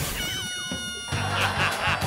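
A sound effect of falling pitch slides over a steady ringing tone, then background music with a steady low beat coming in about a second in.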